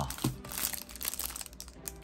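Clear plastic wrap around a stack of trading cards crinkling as hands hold and turn the pack: a run of light crackles.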